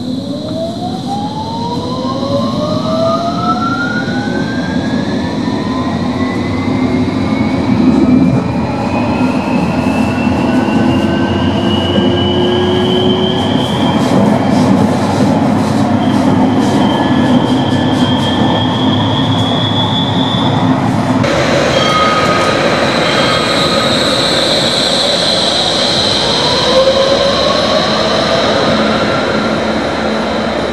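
Electric tram accelerating from a stop, heard from inside the car: the traction motors whine in two tones that climb steadily in pitch and then level off at speed, over loud rumble from the wheels on the rails. About two-thirds through, the sound changes abruptly to a steadier mix of rail noise and high whine.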